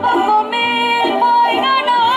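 A girl singing into a microphone through a PA over musical accompaniment with a bass line, her voice holding long, wavering notes.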